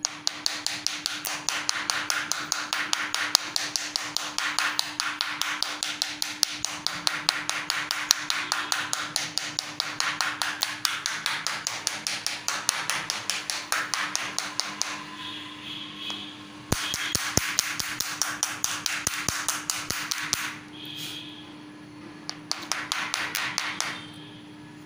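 A pen rubbed hard and fast back and forth across a smartphone's glass screen, coated with a liquid screen protector, making about four or five scraping strokes a second. The rubbing pauses briefly twice in the second half.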